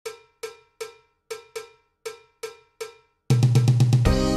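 A small metal bell struck eight times in an uneven rhythm, each strike ringing briefly and dying away. About three seconds in, loud intro music with a heavy bass beat comes in.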